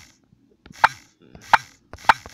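Two sharp key-press clicks, about 0.7 s apart, from typing a passphrase on an Android phone's on-screen keyboard.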